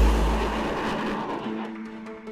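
The rushing roar of a mine-clearing line-charge rocket launch, fading away under a deep bass boom that rings on and dies down. Background music notes come in about halfway through.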